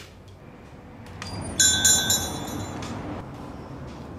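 A shop-door bell chime rings once, briefly, about a second and a half in, over a swell of background noise: the signal of a customer coming in.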